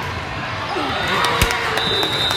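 A volleyball smacked once, sharply, about one and a half seconds in, over the chatter of players and spectators echoing in a large gym. Near the end a referee's whistle blows a steady high note.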